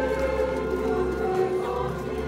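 A choir singing a hymn in long held notes over a steady low accompaniment, as music for a church procession.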